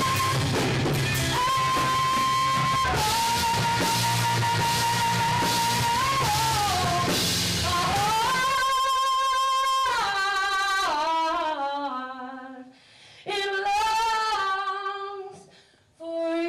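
A live rock band (electric guitar, bass, keyboard and drum kit) plays with a long held lead note on top. About eight seconds in, the drums and low end drop away, leaving a single wavering melody line that briefly fades out near 12 seconds and again at the end.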